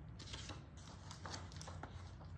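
A large picture book's paper pages being handled and turned: a run of faint rustles and small clicks.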